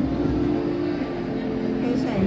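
Busy shop interior background: held pitched tones, like voices or background music, over a steady low rumble.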